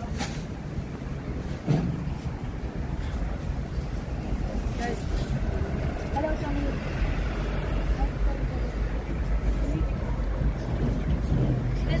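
City street ambience on a handheld camera mic: steady low rumble of wind on the microphone and traffic, with faint voices and a single knock about two seconds in.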